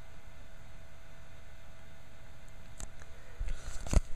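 Quiet room tone with a faint low rumble, a small click a little before three seconds in, then one sharp knock near the end as the handheld camera is swung away.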